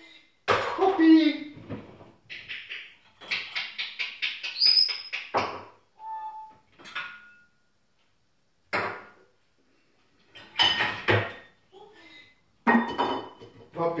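Crockery and cutlery clinking as a dishwasher is unloaded, mixed with an African grey parrot's wordless chatter and whistles, one of them a short rising whistle about five seconds in.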